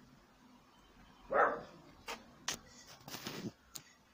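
A few faint, sharp metallic clicks and a brief scrape from a small spanner working the coil pack's mounting bolts on the aluminium bracket. One short call about a second and a half in is the loudest sound.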